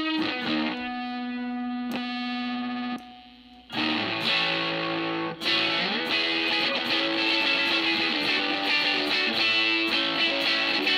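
Telecaster electric guitar played through a germanium fuzz pedal: held, distorted notes ring and die away, then after a short gap about four seconds in, brighter fuzzed chords. The later part is the pedal's treble-booster, Rangemaster-style setting.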